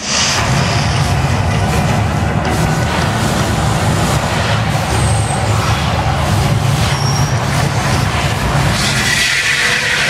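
Mirage hotel's artificial volcano erupting: a loud, deep rumbling starts suddenly and holds steady as the gas flames shoot up, with music mixed in.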